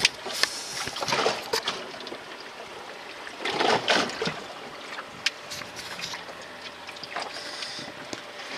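Storm waves washing and sloshing against the hull of an ocean rowing boat, heard from inside its closed cabin: a few rushing surges, the biggest about three and a half seconds in, with a couple of sharp knocks.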